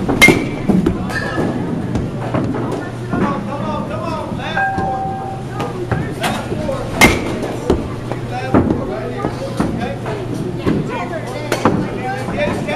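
Baseball bat striking pitched balls in a batting cage: two loud cracks with a short metallic ping, one just after the start and one about seven seconds in, with fainter knocks between.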